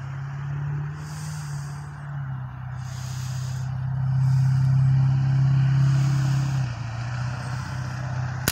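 A motor vehicle's engine running steadily, a low, even hum that swells about halfway through and eases off again near the end.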